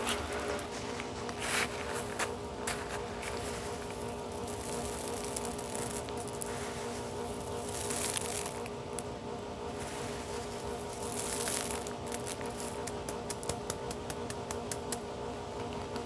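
Garden rocks handled by hand for an ASMR sound, with scattered clicks and scrapes of stone that come quick and close together near the end, over a steady hum of several tones.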